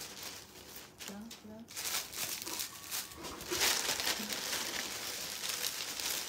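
Plastic bags and plastic-wrapped clothing crinkling and rustling as they are handled, starting about two seconds in and going on in irregular bursts.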